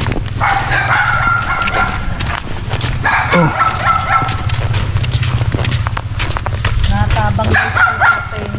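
An animal calling twice, each a held, fairly level cry of a second or more, the first near the start and the second about three seconds in, over a steady low rumble.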